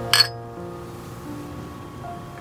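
Two glasses of beer clinked together once in a toast, a single bright chink with a short ring about a quarter second in, over background music.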